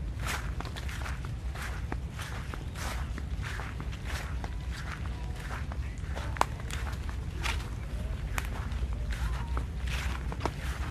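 Footsteps of a person walking on grass and dry leaves, about two steps a second, over a steady low rumble. There is one sharp click about six seconds in.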